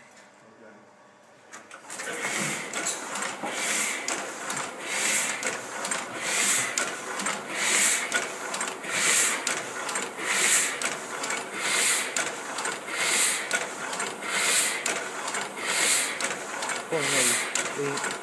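A Heidelberg platen press starts up about two seconds in and runs at a steady working pace, its mechanism clattering in a regular repeating cycle as it feeds sheets.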